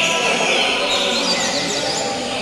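Several caged yellow-bellied seedeaters (papa-capim) singing over one another in competition: quick, high whistled and chirping phrases that overlap without a break.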